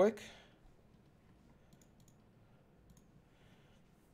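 Near silence with a few faint computer mouse clicks, scattered between about one and a half and three seconds in.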